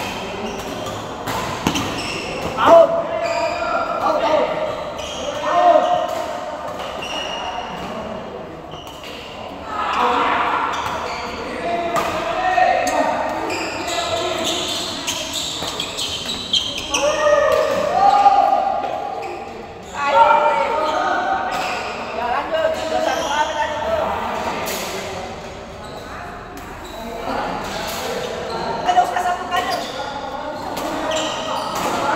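Badminton doubles rallies: sharp racket strikes on the shuttlecock and players' footwork on the court, under shouting voices that echo in a large hall.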